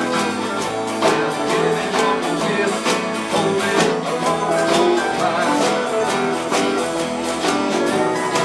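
A small live band playing together: electric guitars and keyboard over drums and washboard percussion, with percussive strokes keeping a steady beat.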